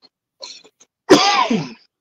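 A man coughing and clearing his throat: a few faint short catches, then one loud cough about a second in that trails off, which he puts down to dust.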